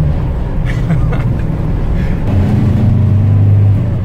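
Chevrolet Corvair's rear-mounted air-cooled flat-six engine running under way, heard from inside the cabin; a little past halfway its note grows louder and steadier, then eases just before the end.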